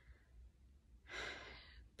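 A woman sighing: one breathy exhale starting about a second in and lasting just under a second, with near silence around it.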